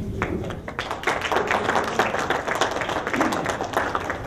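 A small crowd applauding: many hands clapping together, starting just after the start and dying away just before the end.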